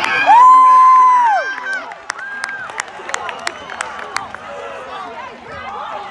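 A nearby spectator's long, loud, high-pitched "woo" cheer: the voice slides up, holds about a second and falls away. A shorter whoop follows about two seconds in, over scattered clapping and crowd voices.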